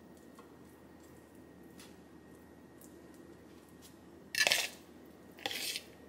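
A fork scooping avocado spread from a bowl and spreading it on sweet potato toast: a few faint clicks, then two short, louder scrapes about a second apart near the end.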